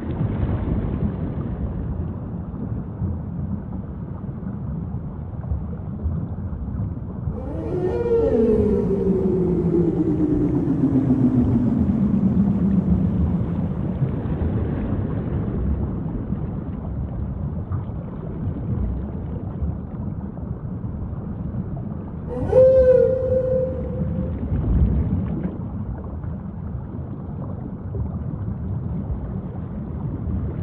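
Whale calls over a steady low rumble. About eight seconds in, one long call glides slowly down in pitch over several seconds. A shorter, steadier call follows about twenty-two seconds in.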